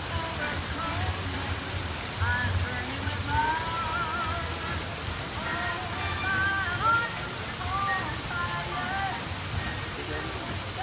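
Background music with a thin, wavering melody, over a steady rushing noise and a low hum.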